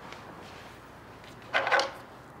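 A short rustle of bedding being grabbed and pulled, about one and a half seconds in, over quiet room tone.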